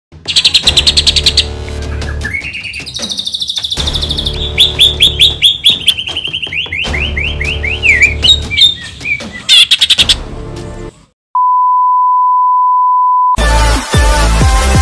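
A cucak ijo (green leafbird) singing rapid chirps, trills and quick gliding phrases, its song filled with mimicked cililin calls, over a backing music track. The song stops about eleven seconds in. A steady beep follows for about two seconds, then electronic music starts just before the end.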